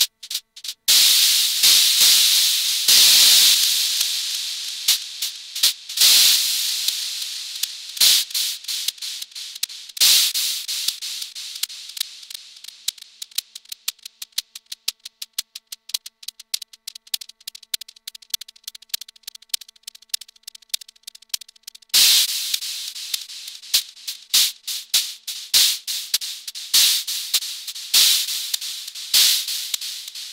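Analog noise from a Steady State Fate Quantum Rainbow 2 Eurorack noise module fed through a delay: sudden bursts of bright hiss and crackling clicks, each trailing off in fading echoes. A dense run of fast clicks thins out and fades in the middle stretch before fresh bursts come back near the end.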